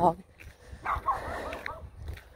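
A dog barking, a short run of barks about a second in.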